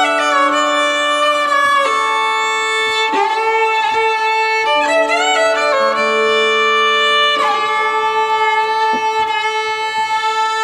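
Violin played with a bow in long, sustained notes, several pitches sounding together, with a few slides from one note to the next.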